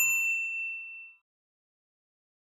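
A single bright, bell-like ding closing the background music, ringing out and fading away within about a second, followed by silence.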